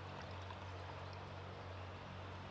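Beer poured from a bottle into a stemmed glass: a faint, steady trickle of liquid.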